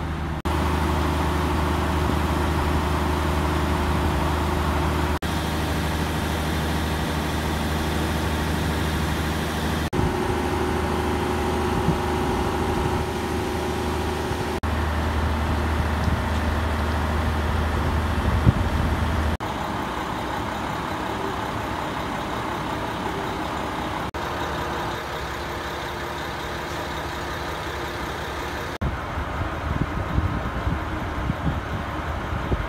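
KiHa 66 diesel railcar's engine idling at a standstill: a steady, even low hum with fainter higher tones above it. The level steps up or down abruptly every few seconds.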